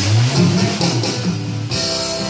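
Live small-band music in an instrumental gap between sung lines: a low bass line moving from note to note under guitar. Full strummed acoustic guitar chords come back in near the end.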